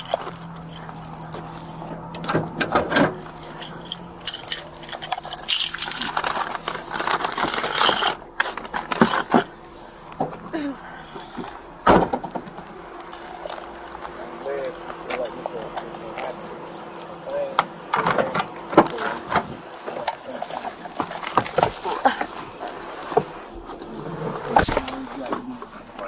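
Handling noise on a chest-worn body camera as the wearer moves: rustling and scattered knocks, one sharper knock about halfway through, with keys jangling.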